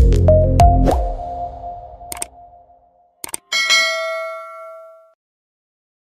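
Electronic intro music with bass-heavy hits fading out over the first two seconds, then a single bright chime about three and a half seconds in that rings out and dies away, a logo-reveal sound effect.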